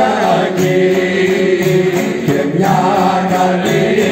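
Male voices singing a slow Greek folk song, the lead sung through a microphone, with a strummed laouto (Greek long-necked lute) accompanying.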